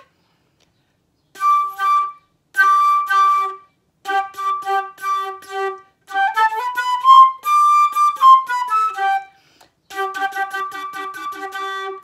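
Concert flute playing short tongued notes on one pitch, a quick run up and back down in the middle, then more repeated notes. It is a demonstration of tonguing too close to the teeth, so the note attacks don't come out nearly as clearly.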